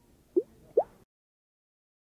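Two short blip sound effects, each a quick upward glide in pitch, about half a second apart.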